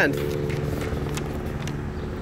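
A steady mechanical hum holding one pitch, like a motor running, with a few faint ticks.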